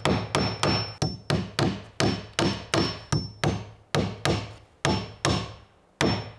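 Hammer driving steel nails into a softwood board, a steady run of sharp strikes about three a second, several ringing briefly with a high metallic tone.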